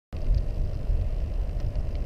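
Steady low rumble of wind buffeting the microphone of a camera on a moving bicycle, with road noise underneath.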